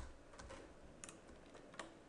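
Faint, irregular clicks of a computer's input devices, about four in two seconds.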